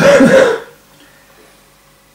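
An elderly man clears his throat once into his hand, a single short burst lasting about half a second.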